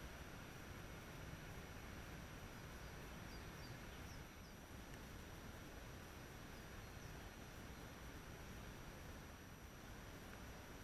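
Faint outdoor forest ambience: a steady low hiss with a few brief, faint bird chirps about three to four seconds in.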